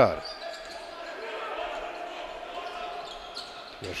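Basketball being dribbled on a hardwood court during live play, over the steady low background sound of an indoor sports hall.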